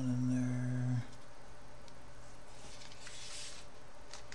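A man humming one low held note, which stops about a second in. A brief faint rustle follows, with no tone, near the end.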